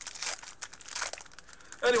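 Foil Magic: The Gathering booster pack wrapper crinkling in irregular bursts as it is handled and opened.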